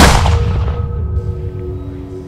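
A single loud gunshot sound effect at the very start, its bang dying away over about a second, under soft music with steady sustained tones.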